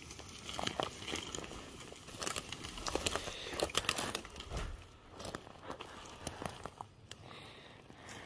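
Dry twigs and forest-floor litter crackling and snapping in irregular clicks under footsteps and as a dead black bear is shifted on the ground, busier in the first half and sparser later.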